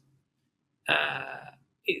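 A man's drawn-out hesitation sound, "uh", about a second in, after a short silent pause.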